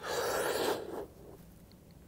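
A quick, deep breath drawn in through the mouth, lasting just under a second, filling the lungs before blowing a dart through a blowgun.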